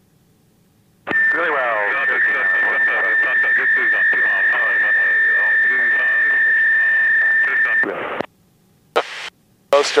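Aircraft radio in the cockpit headset feed: two stations transmitting at the same moment, their voices garbled over one another under a steady high-pitched squeal for about seven seconds, then it cuts off abruptly. A couple of short radio bursts follow near the end.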